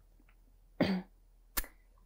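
A single short cough from a person, followed about two-thirds of a second later by one sharp click.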